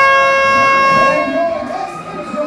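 Countdown horn over the arena PA marking the next rumble entry: one loud, steady, buzzy tone that fades out about a second and a half in, as crowd noise rises.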